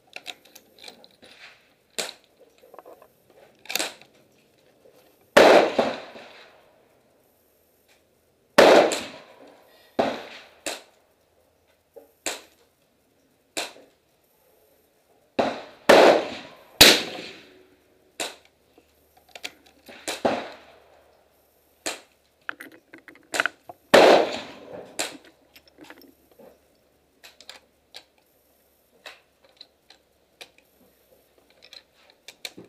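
Irregular gunshots on an outdoor firing range: many sharp reports at uneven intervals, some loud with a short echoing tail and others fainter, as if from several guns on the firing line.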